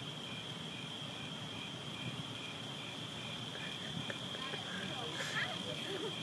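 Insects, likely crickets, calling at night: a steady high trill runs throughout, and a second chirp pulses evenly about three times a second. Faint voices come in near the end.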